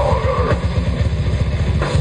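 Death metal band playing live, loud and dense: heavily distorted guitars and bass over rapid, pounding drums, picked up by a camcorder's built-in microphone from the audience.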